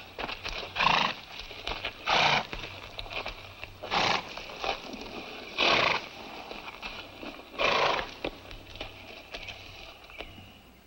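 A horse making five short, noisy blowing sounds, roughly every one and a half to two seconds.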